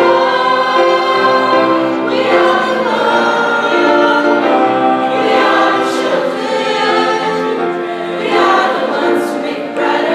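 High school choir singing, holding long chords that shift every second or two.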